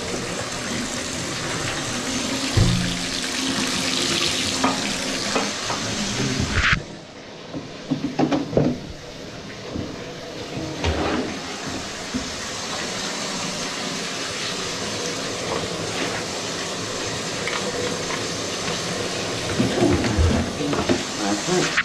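Water running from a tap in a steady rush, cutting off sharply about seven seconds in, followed by a few knocks and clatter of equipment being handled.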